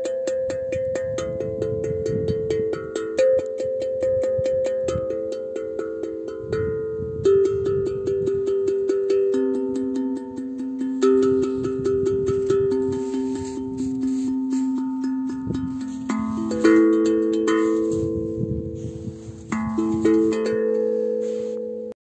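Steel tongue drum (glucophone, 30 cm, nine tongues) played with the fingertips in fast, even, bouncing strikes on one tongue at a time, each note ringing on. The player moves to a new tongue every few seconds, and near the end several notes sound together. This is the rebound-stroke drill for getting a clean tone from each tongue.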